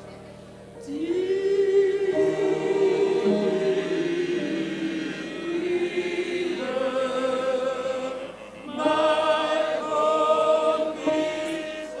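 Mixed choir of men's and women's voices singing a hymn in long held phrases. There is a short pause for breath near the start and another about two thirds of the way through.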